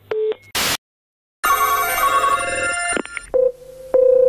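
Telephone call-progress sounds. The last busy-tone beep of a hung-up line, a click and a second of silence, then a telephone ringing for about a second and a half. A steady ringback tone starts near the end as the next call goes through.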